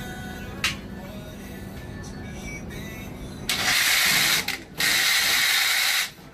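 A hinged slatted window panel being worked open by hand: a sharp click, then two loud rushing scrapes of the mechanism near the end, each about a second long.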